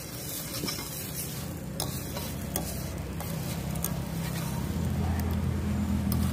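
Wooden spatula stirring potato curry (aloo dum) simmering in a metal wok over a wood fire, the gravy sizzling, with a few light knocks of the spatula against the pan. A steady low hum runs underneath.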